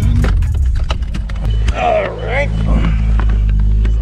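A car's engine running with a steady low rumble, heard from inside the cabin. The background music cuts out in the first moment, and voices come in briefly about two seconds in.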